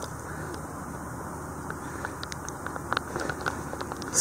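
Faint, steady outdoor background noise with a low rumble, after the leaf blower has stopped, with a few small ticks about two to three and a half seconds in.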